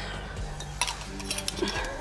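A few light clicks and clinks of a metal mason jar lid being picked up and handled near the glass jar.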